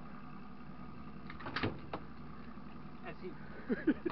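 A boat's motor runs with a steady hum under a few sharp knocks and clicks about a second and a half in. A man's voice starts near the end.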